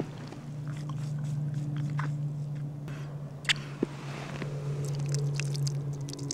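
Small wet sucking and squishing mouth sounds as water is drawn up through a Puri-Straw filter straw, with a couple of sharper clicks about three and a half seconds in. A steady low hum runs underneath.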